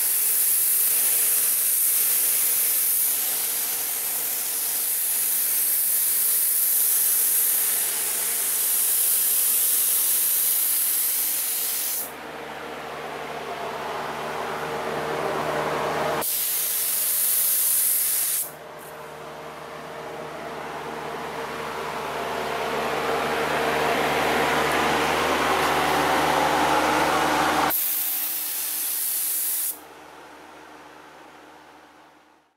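Gravity-feed paint spray gun hissing as compressed air atomizes paint, in several stretches that start and stop abruptly. Between them the sharp hiss drops out and a lower rushing noise takes over, growing steadily louder, with a faint steady hum underneath.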